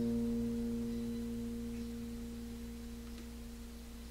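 The closing chord of an acoustic guitar ringing out and slowly fading, with a few low notes sustaining longest as the higher ones die away.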